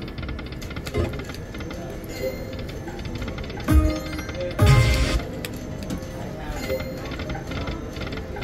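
Panda Magic video slot machine spinning its reels with its game music and chimes running, and a few sudden low thuds as reels land. The loudest thud comes about halfway through.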